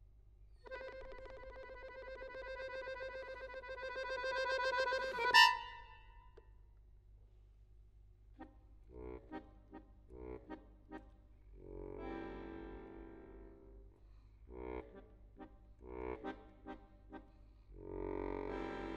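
Solo accordion playing contemporary music: a long held chord swells steadily louder and breaks off in a sharp, loud accent about five seconds in. After a short pause come short detached stabs and brief held chords.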